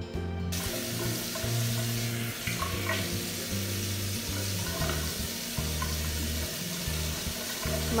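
Steady hiss of running water, starting suddenly about half a second in, with background music underneath.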